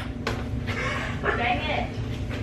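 A ping-pong ball struck with a paddle, a sharp click at the very start, followed by a person's voice for about a second.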